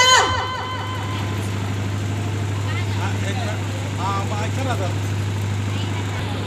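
A woman's amplified voice breaks off just at the start, leaving a steady low hum with faint voices in the background.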